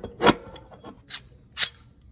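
Sharp metallic clicks and clacks from the lever and ratchet mechanism of a stainless steel, hand-squeezed Viking Arm-type lifting tool as its handle is worked: one loud clack about a quarter second in, then a few lighter clicks.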